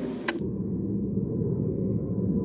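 Low, steady murmur of the Senate chamber floor during a roll call vote: distant chatter and movement of senators standing in groups. It comes after a single sharp click about a third of a second in, where the higher sounds cut off suddenly.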